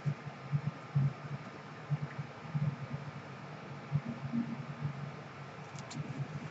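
A hardcover book being handled and turned, with soft irregular low bumps over a faint steady room hum.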